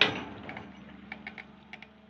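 Sany excavator bucket digging into stony soil: a loud scrape-and-knock at the start, then small stones and clods ticking and rattling as the sound fades away, over a faint low engine hum.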